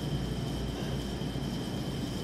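Steady low background rumble with a faint high whine above it, unchanging throughout.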